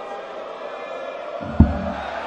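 Arena crowd murmuring steadily, broken about one and a half seconds in by a single sharp, low thud: a dart striking the dartboard.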